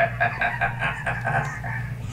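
A man laughing in a quick, even run of short 'ha' pulses, about seven a second, over a low steady hum.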